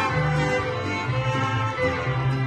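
Live mariachi band playing an instrumental passage: violins carry the melody over a steady bass line.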